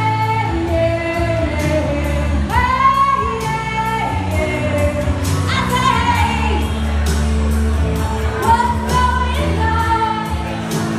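A woman singing into a microphone through a PA, holding long notes that bend in pitch, over backing music with a bass line and a steady drum beat.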